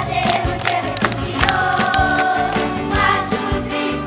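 Children's choir singing a pop song over a keyboard backing track with a steady drum beat, holding one long note in the middle.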